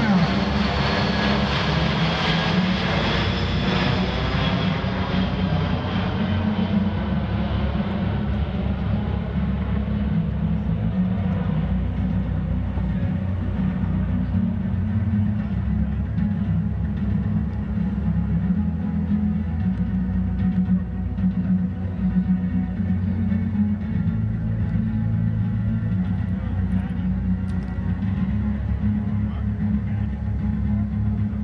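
C-17 Globemaster III's four Pratt & Whitney F117 turbofans passing overhead, loud at first and fading over the first ten seconds as the jet flies away. Music plays underneath throughout.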